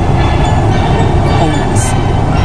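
Steady road rumble inside a moving car's cabin.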